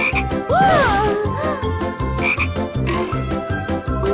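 Cartoon frog sound effect: croaking in two gliding calls, rising then falling in pitch, over background music with a steady beat.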